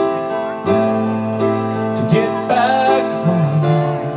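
Live band playing a slow lullaby song, with held chords that change about once a second over a bass line.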